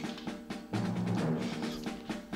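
Background workout music: low held synth notes that change every half second or so, with light drums.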